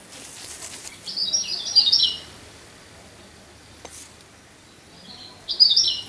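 A bird calling in two quick bursts of short, high chirps, the first about a second in and the second near the end.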